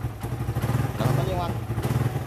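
Suzuki Raider 150 motorcycle's single-cylinder four-stroke engine idling with a steady low pulse.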